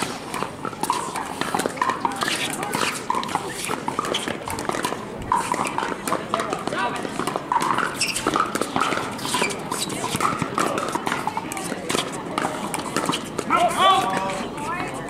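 Repeated sharp pops of pickleball paddles striking the hard plastic ball, from the rally and from neighbouring courts, over a background of many voices. A louder voice call comes near the end.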